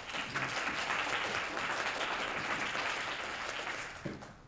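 Audience applauding, easing off near the end.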